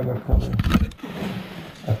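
Handling noise from the camera being picked up and moved: low thumps and rubbing on the microphone in the first second, then a softer rustle. A voice starts just at the end.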